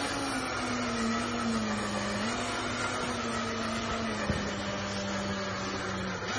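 Remote-control truck's simulated engine sound idling: a steady low hum on one held pitch that dips slightly a couple of times.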